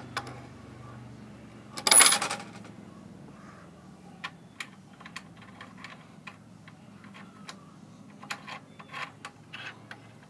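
Hard clinking and clattering from handling a homemade go-kart trailer. One loud clatter comes about two seconds in, followed by scattered light clicks and knocks.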